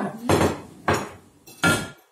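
A metal teaspoon knocks against ceramic mugs three times, each clink sharp and briefly ringing.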